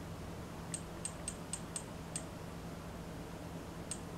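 Buttons on a small action camera pressed in quick succession while stepping through its menu: six short, high-pitched clicks within about a second and a half, then one more near the end. A faint steady low hum runs underneath.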